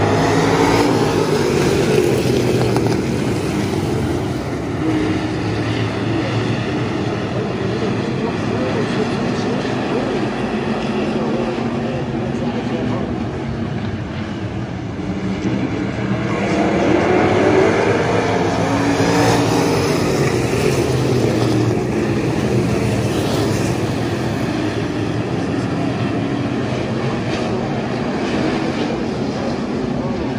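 A field of IMCA Stock Cars' V8 engines racing on a dirt oval, rising and falling in pitch as the pack goes by. It is loudest at the start and again about 16 to 22 seconds in, as the cars come around nearest.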